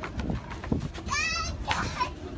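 A young child's high-pitched, wavering squeal about a second in, lasting about half a second, over a steady low rumble.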